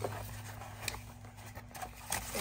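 A cardboard subscription box being handled and its lid lifted open: soft rubbing and scraping of card with a couple of small clicks, over a steady low hum.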